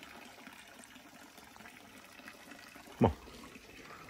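Faint, steady trickle of water, as from a pipe running into a pond.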